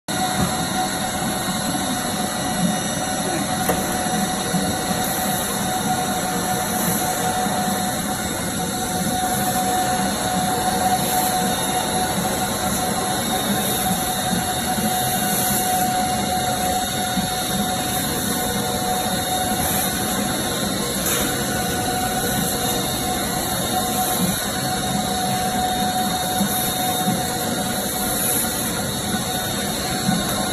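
Machinery of an orange washing and elevator-conveyor line running steadily, with a steady whine running under the noise.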